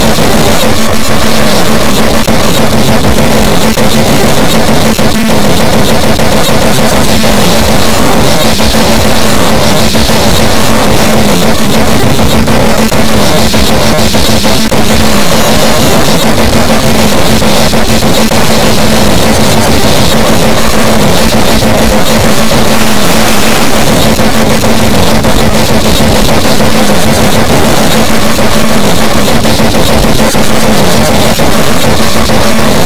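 Loud, dense, noisy music with a steady low drone held under it.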